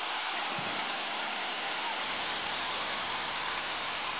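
Steady rush of a mountain stream cascading over rocks.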